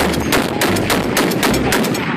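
Rapid gunfire, shot after shot at about six or seven a second.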